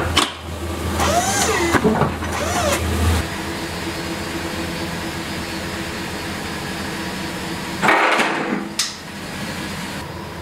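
A pickup truck's engine running steadily at idle, with a louder rush of sound about eight seconds in. A different, wavering sound stops abruptly about three seconds in.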